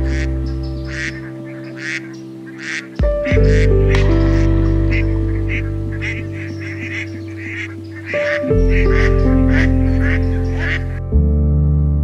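Background music of sustained keyboard chords, with waterfowl calling over it again and again; the calls stop about eleven seconds in and only the music goes on.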